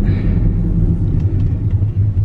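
Steady low rumble of a moving car, road and engine noise heard inside the cabin.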